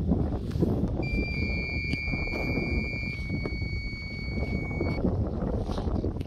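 Wind rumbling on the microphone, with a steady high electronic tone, two slightly different pitches overlapping, that starts about a second in and stops about five seconds in.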